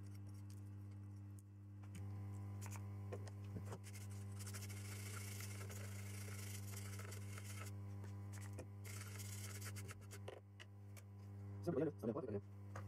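A small brush scrubbing across a circuit board, a scratchy rustle lasting several seconds from about four seconds in, after a few light handling clicks. A steady low electrical hum runs underneath.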